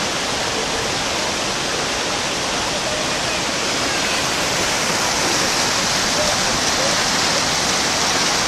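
Stream water cascading over rocks in a small waterfall, a steady loud rush that grows a little brighter in the second half.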